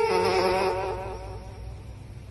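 Domestic cat snoring loud: one buzzing, pitched snore on a breath that fades away over about a second and a half.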